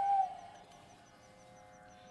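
A Carnatic bamboo flute (venu) ends a wavering melodic phrase in raga Ranjani about a quarter second in, then falls into a near-quiet pause between phrases. Through the pause a faint high tick repeats about four or five times a second.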